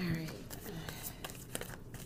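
Tarot cards being shuffled and handled: crisp papery clicks and rustling, with a brief murmured voice near the start.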